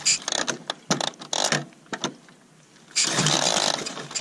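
Clicks and clunks from the kickstart and engine of a 1929 MT 500 OHV motorcycle, whose JAP overhead-valve single is not yet running, as the rider works it before starting. A louder, longer rush of mechanical noise comes about three seconds in.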